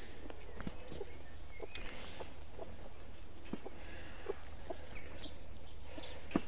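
Light scattered knocks and rustles from a piece of cut turf being handled and laid into a wire-and-net chick run, with a few faint bird chirps, over a steady low rumble.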